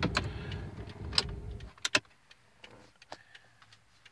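Hazard-warning flasher relay clicking in a stopped car, over the car's low running rumble, which cuts off a little under two seconds in; after that only the soft, regular clicks remain.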